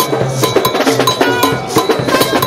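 Marching brass band playing: trumpets holding notes over a bass drum and fast, sharp metallic percussion strokes.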